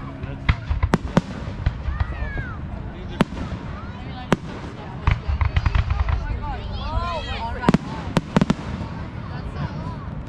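Aerial fireworks shells bursting overhead as several sharp bangs: a pair about a second in, single ones near three and four seconds, and a quick cluster near eight seconds.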